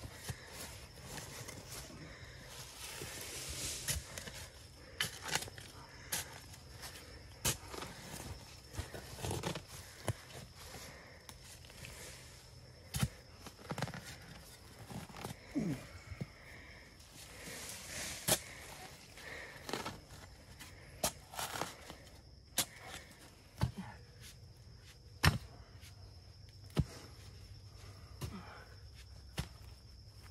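Shovel and mattock digging into packed clay soil: irregular sharp strikes every second or two, with longer scraping, rustling stretches a few seconds in and again about halfway through.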